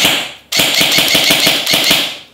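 ASG CZ Scorpion EVO3 airsoft electric gun with its stock gearbox firing full-auto: a burst ending just after the start, then after a half-second pause another steady, rapid burst of shots that stops at the end. Its rate of fire is 'not fast'.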